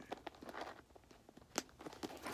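Faint handling sounds of a packed Louis Vuitton Félicie pochette being closed: light rustling and small clicks, with one sharper click about one and a half seconds in.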